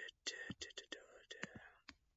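A man whispering quietly in short breathy bursts, without voice, with a few sharp mouth clicks between them.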